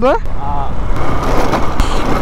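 Bajaj Pulsar 135 LS motorcycle on the move: its single-cylinder engine runs under a steady rush of riding wind on the microphone.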